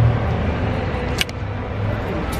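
Low, steady vehicle rumble in a concrete parking garage, with a single short click a little over a second in.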